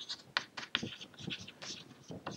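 Chalk scratching on a chalkboard in a run of short strokes as a word is written.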